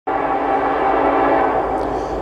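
Air horn of a Norfolk Southern EMD SD70ACe diesel locomotive leading an approaching freight train, held as one long, steady multi-note chord over a low rumble.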